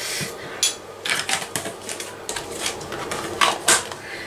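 Metal spoon tapping and scraping against a stainless steel saucepan as butter is knocked off it: a scattered run of light clicks and taps, bunched about a second in and again near the end.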